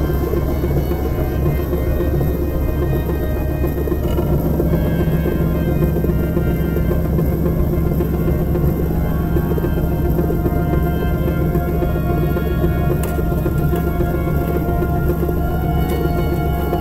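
Experimental drone music: layered low tones held steadily, with a new low tone entering about four seconds in.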